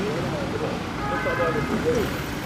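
Several indistinct voices talking over steady outdoor background noise, with cars slowly driving off.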